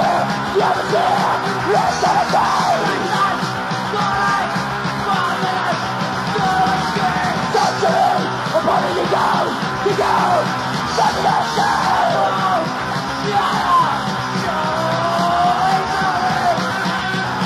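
Stenchcore, crust punk with a strong metal influence: guitar, bass and drums playing fast and dense, with a shouted vocal over them, dubbed from a 1980s cassette.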